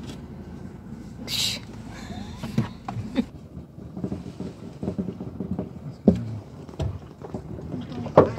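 Car-cabin hum with faint, low voices, a short hiss about a second and a half in, and several sharp clicks and knocks scattered through, as a zebra is hand-fed a carrot at the open car window.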